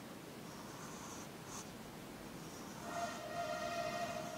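4B graphite pencil scratching on paper in short sketching strokes. About three seconds in, a steady held note comes in over it.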